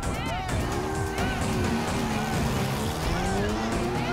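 Motorcycle engine revving, its pitch rising and falling. Background music and crowd voices run under it.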